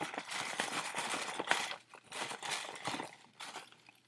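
Paper name slips rustling and crinkling as a hand rummages through them in a small hat to draw one, in an irregular run of rustles that thins out near the end.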